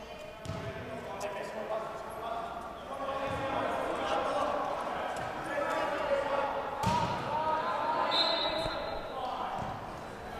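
Indistinct voices and calls echoing in a gymnasium, with a basketball bouncing on the hardwood court a few times, the sharpest bounces about half a second in and near seven seconds.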